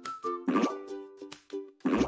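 Cheerful children's background music with cartoon pop sound effects marking the countdown to the answer reveal, the clearest pops about half a second in and just before the end.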